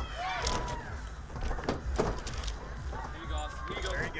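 Spectators shouting and calling out encouragement, with a few sharp knocks over a steady low rumble.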